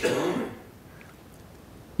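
A short noisy sound from a person's throat and breath, lasting about half a second, then quiet room tone.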